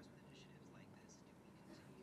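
Near silence: room tone with a faint voice in the background.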